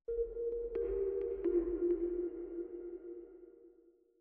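Electronic outro music sting: a held low two-note drone that starts suddenly, with a deep rumble beneath and four short bright pings in its first two seconds, fading away near the end.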